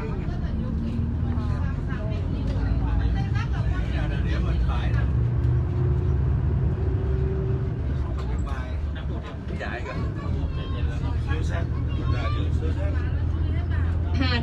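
Tour bus engine running with a steady low hum, heard from inside the cabin, with a faint whine rising slowly over the first half as the bus picks up speed. Indistinct voices of passengers murmur over it.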